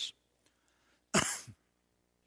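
A man coughs once, a short single cough about a second in.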